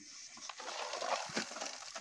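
Small round discs clicking and knocking together as they are handled and shifted on the ground, with a few sharp knocks around the middle and a light scuffling rustle.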